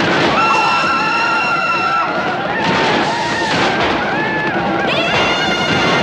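Cartoon action-scene sound mix of a train chase: shouting voices over a busy din, cut by two long steady whistle tones, the first lasting about a second and a half and the second starting with a short upward slide near the end, typical of a steam locomotive's whistle.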